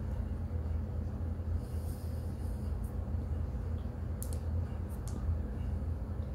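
A steady low hum throughout, with soft breaths through the nose and a few faint wet mouth clicks from slow, closed-mouth chewing of a thick mouthful of powder, around four to five seconds in.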